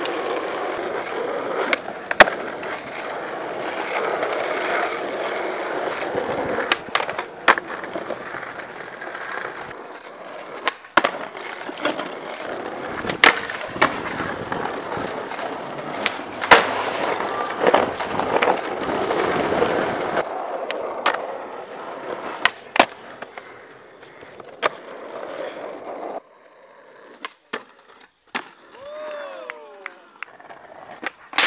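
Skateboard wheels rolling over rough street pavement, a steady gritty roll broken by repeated sharp wooden clacks of tail pops, flips and landings. The loudest clack comes about two seconds in. Near the end the rolling stops and only a few separate clacks are left.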